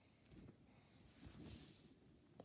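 Near silence, with a faint, soft noise a little past the middle.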